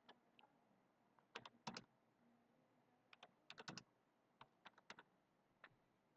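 Faint keystrokes on a computer keyboard, in a few short clusters of taps, as commands are typed.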